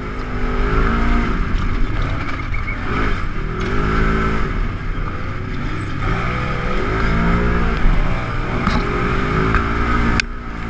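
Polaris RZR XP1000's parallel-twin engine heard on board, revving up and falling back again and again as it is driven hard. A few sharp knocks come near the end.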